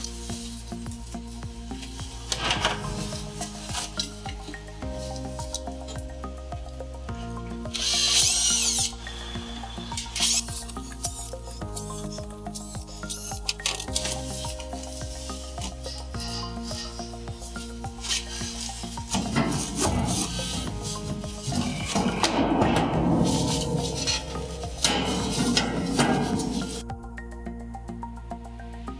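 Background music of slow held chords, with a power drill boring holes in stretches: briefly about 8 seconds in, then more steadily from about 19 to 27 seconds in.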